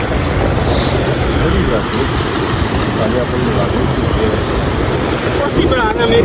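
A fast, shallow river rushing over stones: a loud, steady noise of flowing water.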